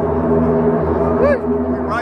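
The field of NASCAR stock cars' V8 engines running at speed on the track, heard from under the grandstand as a loud, steady drone of several held pitches.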